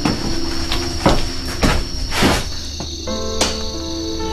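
Background score of held, sustained notes, crossed by several short swishing sweeps of noise, the last and sharpest near the end.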